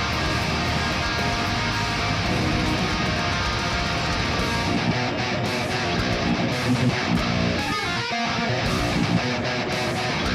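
Mayones Setius seven-string electric guitar played through a Kemper profiling amp, downpicking progressive metal riffs in a low tuning, with a brief stop about eight seconds in.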